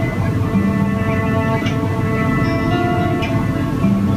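A folk band plays an instrumental passage between sung verses: plucked guitar with long held notes from the other instruments of a guitar, trumpet, cello and accordion line-up. A steady low background hum runs under it.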